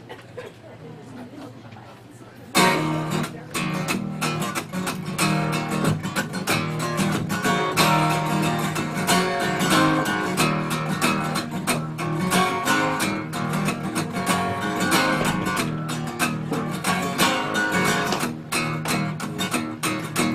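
Acoustic guitar strummed in a steady rhythm, starting about two and a half seconds in and playing the instrumental intro of a song before the vocals come in.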